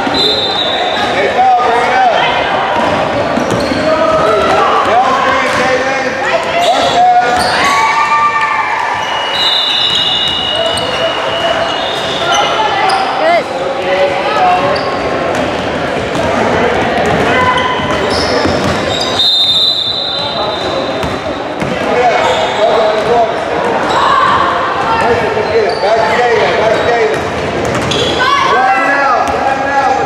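Basketball game heard in a large, echoing gym: a ball bouncing on the hardwood, indistinct calls from players and spectators, and a few brief high sneaker squeaks on the court.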